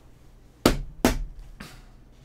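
Three short thumps or knocks, about half a second apart, each tailing off briefly.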